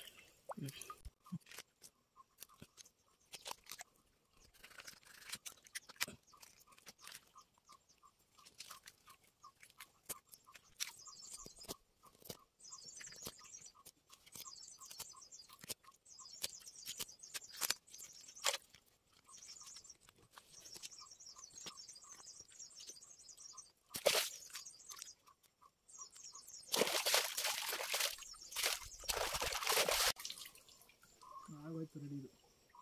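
A knife cutting and scraping a whole catla fish, giving irregular crunching clicks. Near the end, loud water splashing as the fish is rinsed in a stream.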